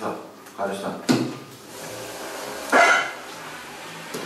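Short, broken bits of speech in a meeting room, with a brief loud sudden sound about three seconds in.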